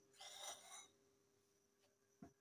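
Near silence: room tone with a faint steady hum, and one faint brief sound a quarter of a second in that lasts just over half a second.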